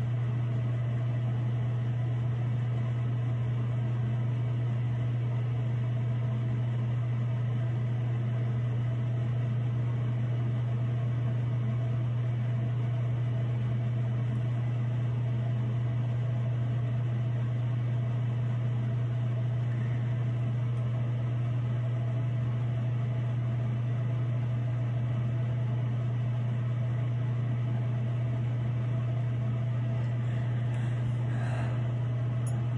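A steady low hum that does not change.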